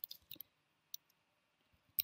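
A few faint clicks of computer keys being pressed: a small cluster at the start and a single click about a second in.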